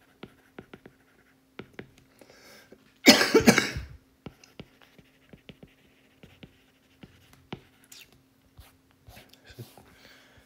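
A single loud cough about three seconds in, lasting about a second. Around it come soft, irregular clicks of a stylus tapping on a tablet screen as handwriting is written.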